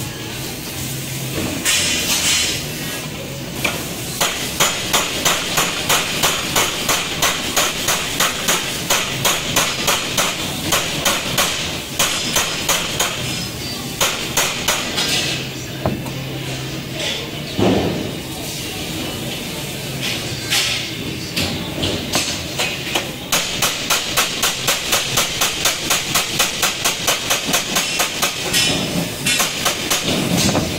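Quick, regular metal strokes on a steel pipe worked by hand, about two to three a second, in runs several seconds long with short pauses between them, over a steady hiss.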